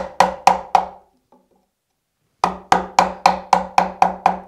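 Mallet tapping a half-inch chisel down into a fir board along a knife-scored line, chopping to the knife wall. The knocks are sharp, each with a short ringing note, about four a second: a run of four, a pause of about a second and a half, then about six more.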